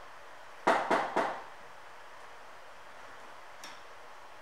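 Three quick, sharp knocks about a quarter of a second apart, followed near the end by a single faint click, over a steady low hiss.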